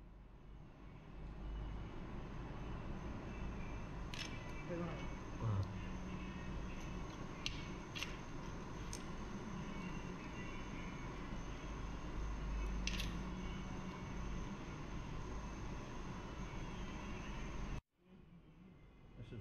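Steady restaurant room noise with a low hum, broken by a few sharp clicks spread out over the span: cockle shells being pried open by hand at the table.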